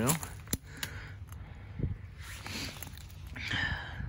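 Light clicks and rustling of a hand reaching through dry twigs, leaf litter and old glass debris, with soft breathing between them.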